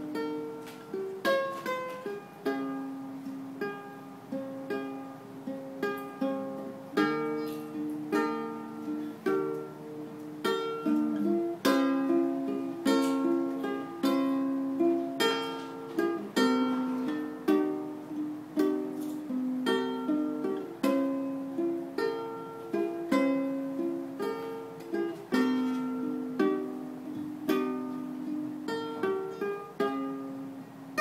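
Solo ukulele played instrumentally, fingerpicked: a melody of plucked notes and chords, each ringing and fading.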